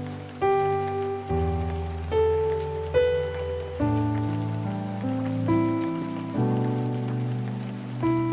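Solo piano playing a slow hymn, struck chords about once a second, each ringing and fading, over a steady bed of recorded rain falling on a surface.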